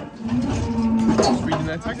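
A cow mooing: one long, steady, low call, lasting about a second and a half.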